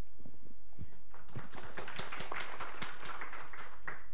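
Audience applauding, building up about a second in and dying away near the end.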